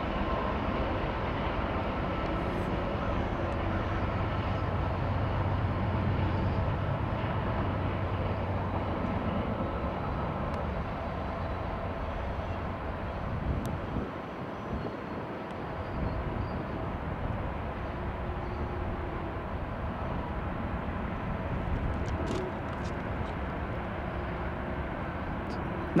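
Diesel freight trains passing: a Norfolk Southern distributed-power locomotive's engine drone, strongest in the first several seconds, over the steady rumble of rolling rail cars. After a brief dip about 14 seconds in, the running train noise continues as a Union Pacific locomotive approaches.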